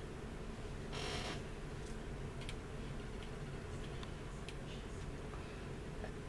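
Faint handling of a plastic scale model: a brief soft rustle about a second in and a few light clicks, over a steady low room hum.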